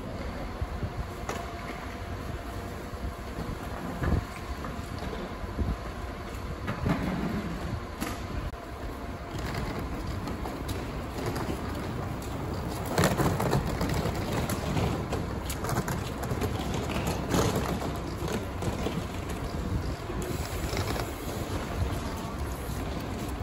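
Rolling suitcase wheels rattling over paving and footsteps of a group walking past, over a steady low rumble from an idling coach bus. The clatter is loudest about 13 seconds in, as a suitcase is wheeled close by.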